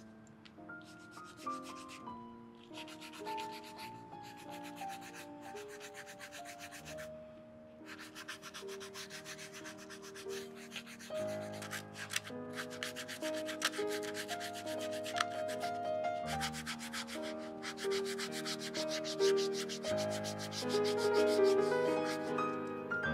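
Rapid back-and-forth rubbing strokes of a small hand-held block over a suede boot's upper and sole edge, with a few short pauses, louder in the second half. Soft background music plays a slow stepping melody underneath.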